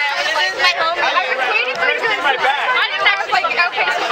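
Several people talking over one another: lively, overlapping conversation in a small group, with more voices in the background.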